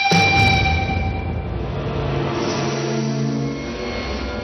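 Dramatic background score: a sudden hit followed by a low rumbling swell, with a few low sustained notes coming in partway through.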